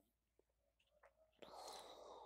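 Near silence, then a faint breathy hiss about one and a half seconds in: a person's breath between sentences.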